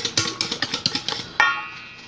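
A utensil beating a thick pudding mixture in a stainless steel mixing bowl, a quick run of sharp clicks against the metal. About one and a half seconds in it ends with one ringing clank on the bowl.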